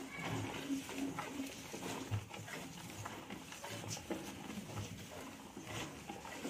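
Milk squirting from a Gir cow's teats into a steel pail during hand milking, in a steady rhythm of about two squirts a second.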